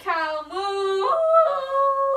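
A girl's voice imitating a cow, making drawn-out, high-pitched mooing calls: three in a row, the first falling in pitch and the last one held higher.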